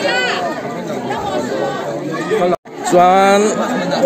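People chatting close by, several voices overlapping. The sound drops out for an instant about two and a half seconds in.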